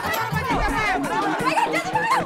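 Several people shouting over one another, calling out to catch a thief, with background music underneath.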